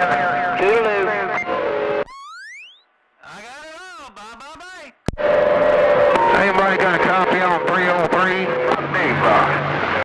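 CB radio speaker receiving skip traffic: garbled, overlapping voices with a steady whistle under them, a rising whistle about two seconds in, a brief gap, then a warbling voice. A sharp click comes about five seconds in, followed by more crowded voices and tones.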